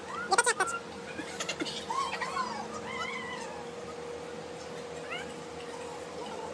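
An animal's short, rising-and-falling pitched calls, a few about two to three seconds in and one more near the end, over a faint steady hum.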